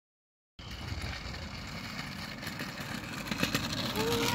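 Steady outdoor background noise with a low rumble, starting suddenly about half a second in after dead silence.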